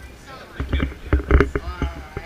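Indistinct voices talking in a busy room, with low rumbling thuds underneath from about half a second to a second and a half in.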